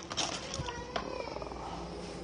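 A domestic cat purring right beside the microphone, with a couple of light clicks about half a second and one second in.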